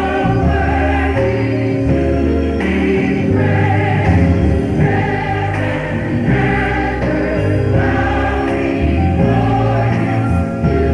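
Gospel choir singing over instrumental accompaniment, with held low bass notes that change every second or so.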